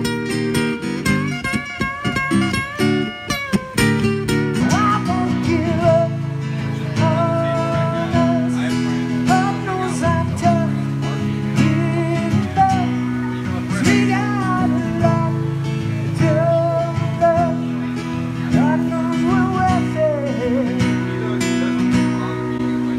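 Live solo acoustic guitar music: an acoustic-electric guitar picked and strummed in an instrumental passage. From about four seconds in, a wavering, gliding melody line rides over the held chords.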